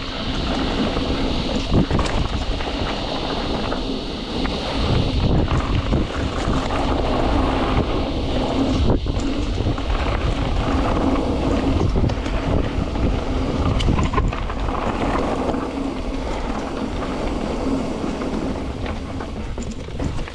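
Mountain bike descending a dirt singletrack: knobby tyres rolling over dirt and leaves, with the bike rattling and knocking over bumps and wind buffeting the microphone.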